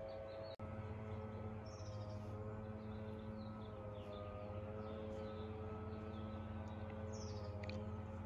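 Outdoor background: a steady mechanical hum with a few held tones that waver slightly in pitch, and small birds chirping now and then. About half a second in there is a brief dropout.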